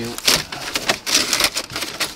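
Aluminium foil crinkling and crackling in quick irregular bursts as it is unwrapped by hand from a door railing.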